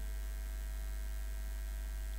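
Steady low electrical hum, mains hum in the recording, unchanging throughout, with no other sound.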